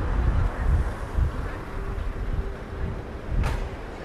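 City street ambience: a low traffic rumble with wind buffeting the microphone in uneven gusts. A faint steady hum sounds in the middle, and a brief sharp noise comes near the end.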